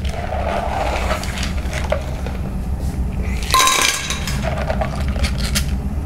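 Clam shells clinking and rattling against each other and a plastic container as the clams are drained and handled, with one louder clatter about three and a half seconds in. A steady low kitchen hum runs underneath.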